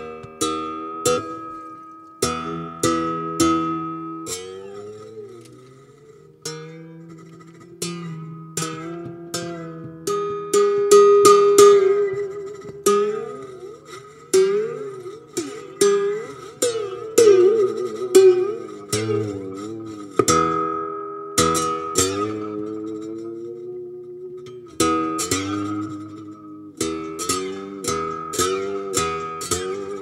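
Guitar playing a slow, sparse blues intro: separate plucked notes and chords that ring out, several of them sliding or bending in pitch.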